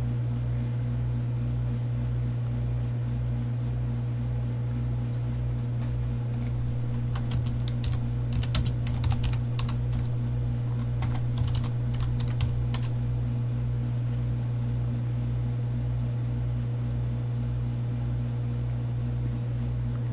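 Computer keyboard typing: a scatter of quick clicks in the middle, over a steady low hum with a faint regular pulsing beneath it.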